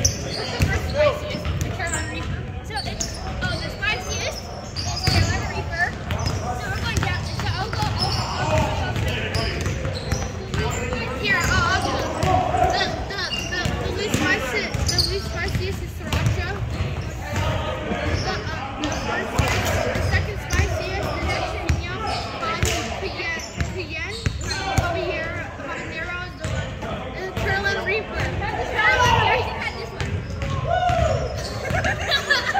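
Basketball being dribbled on a hardwood gym floor during a game, with scattered thuds of the ball and footfalls and indistinct voices of players and onlookers mixed in.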